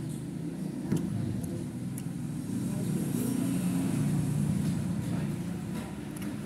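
A motor vehicle's engine rumbling, growing louder in the middle and then easing off as it passes, with a light click about a second in.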